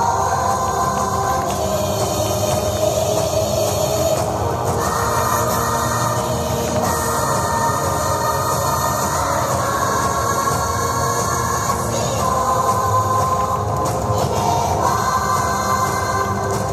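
Backing music for a flag-dance performance, with sustained chords that shift every few seconds.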